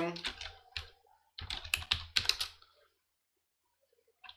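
Computer keyboard typing: two quick runs of keystrokes that stop about three seconds in.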